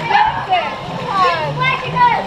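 Voices, some high-pitched and sliding down in pitch, with no clear words.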